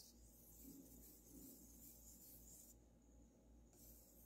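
Near silence, with a faint scraping of a wire whisk stirring a thick cream mixture in a metal bowl.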